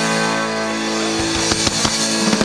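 Live rock band of electric and acoustic guitars, bass and drums holding one sustained, ringing chord at the close of a song, with a few drum hits in the second half.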